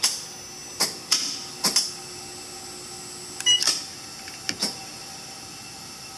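AMX 4 portable X-ray unit going through prep and exposure: a steady electrical whine with several sharp clicks, then a short beep about three and a half seconds in as the exposure is made, after which the whine stops. A few more clicks follow.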